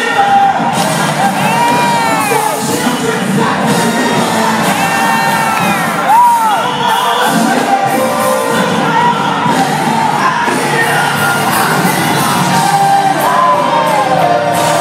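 Church choir singing with music, the congregation cheering and shouting along, with several high cries that rise and fall in pitch.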